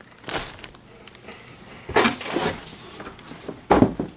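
Cardboard shipping box and plastic-bagged hoodies being handled: a few short rustling, scraping bursts, the loudest about two seconds in and just before the end.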